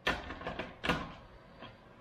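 Plastic blender jar being handled and set onto its motor base: two hard clunks about a second apart, then a faint tap near the end.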